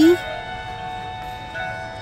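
Christmas music playing from a Disney animatronic holiday village's built-in music, holding sustained notes.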